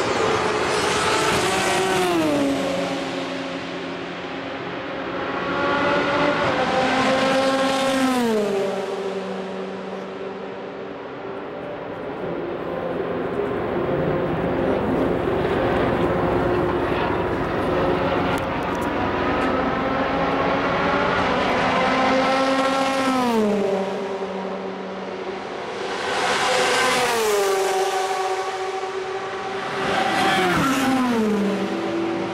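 Le Mans endurance race cars passing one after another at full speed, four pass-bys in all, each engine note dropping sharply in pitch as the car goes by. Two come early, a few seconds apart, and two come near the end, with engines still heard in the distance between them.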